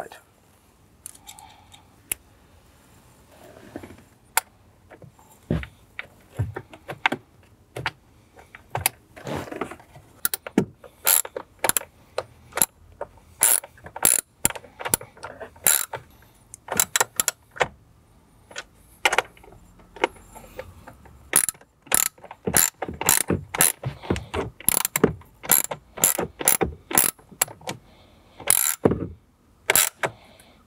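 Socket ratchet clicking as screws are turned in: sharp clicks, sparse at first and then in quick uneven runs from about a third of the way in.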